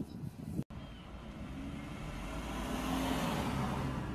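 A car passing by on the road, its engine and tyre noise swelling to a peak and then fading, after a brief break in the sound just after the start.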